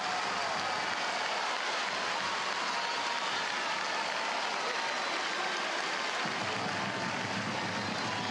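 Stadium crowd cheering and applauding a goal, a steady even wash of noise with no single standout sound.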